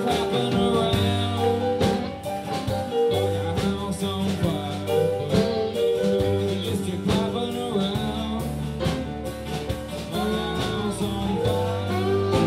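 Live band playing: electric and acoustic guitars over bass and drums, with a steady beat.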